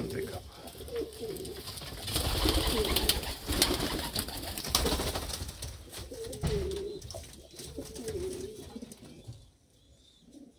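Domestic pigeon cooing several times, short wavering low calls, with rustling and knocking noise in the first half.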